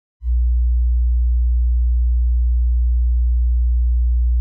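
A loud, steady, low-pitched electronic sine tone, a deep pure hum that starts about a quarter second in and holds unchanged.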